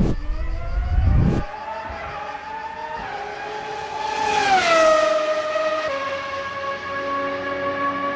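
Race car engine sound effect: an engine note that climbs slowly, drops sharply in pitch about four to five seconds in as the car passes, then holds steady. Two low booms come in the first second and a half.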